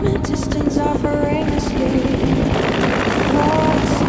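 Bell UH-1 Huey helicopter in flight, its two-blade main rotor chopping steadily, with music playing over it.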